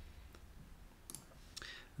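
A few faint, separate clicks from a computer keyboard and mouse as a product is typed into a search box and picked from the results.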